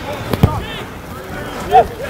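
Shouts from rugby players across an open pitch, with a sharp thud about half a second in, over steady outdoor noise.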